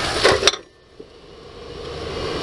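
Steady low road and engine noise inside a moving truck's cab. It drops away abruptly about half a second in, then fades back up, with a single click about a second in.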